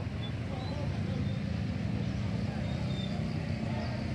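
Steady low hum of an idling motor vehicle engine in street traffic, with faint scattered voices of a crowd.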